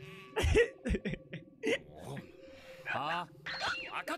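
Anime character voices exchanging short lines, including a questioning "Huh?", with a couple of short low thumps about half a second and one second in. A man laughs near the end.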